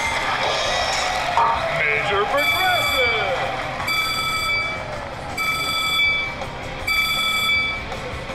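Press Your Luck video slot machine playing its bonus sound effects: a chiming electronic chord that sounds four times, about every second and a half, over casino background noise.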